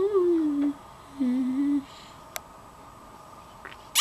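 A girl hums two short wordless notes with a pause between: the first slides down in pitch, the second is lower and steadier.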